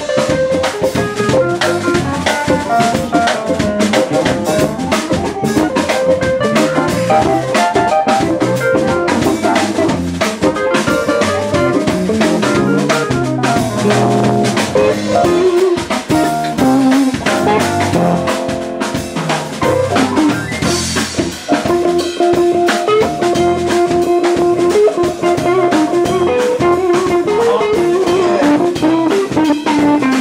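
Live jazz-blues band playing an instrumental passage: drum kit, bass guitar, electric guitars and keyboard, with no singing.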